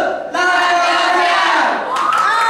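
A group of teenagers shouting a team cheer together in long held shouts, one ending just after the start and the next starting about a third of a second in and lasting over a second.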